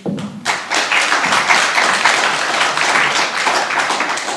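Audience applauding, the clapping starting about half a second in.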